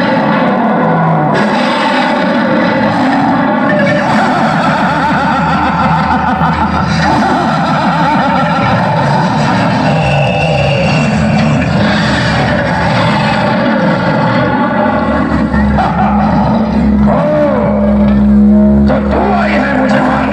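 Loud, dense soundtrack of music and sound effects, with a deep steady hum coming in about three quarters of the way through and sweeping pitch glides near the end, where it is loudest.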